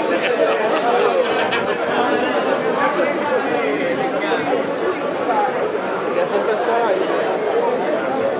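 Crowd chatter: many voices talking over one another at a steady level.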